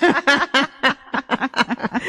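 Women laughing in a run of quick, short bursts, about seven a second.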